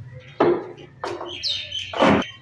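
Molded plastic chairs knocking together as they are lifted and stacked: a sharp knock about half a second in, another about a second in and a louder one at the end. A few short bird chirps come in between.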